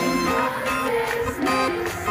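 Live pop band music from a stage, with drums and guitar playing, picked up from within the audience.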